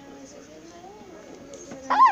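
A short, high-pitched yelp near the end, rising then falling in pitch, over faint background talking.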